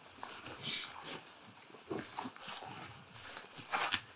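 Standing winter wheat rustling as stalks and ears brush against clothing and legs of people walking through the crop, in short irregular swishes that grow louder near the end.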